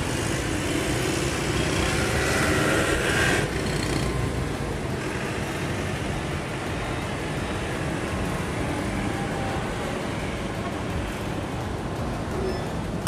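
Steady low vehicle rumble, with a higher whine lasting a couple of seconds near the start.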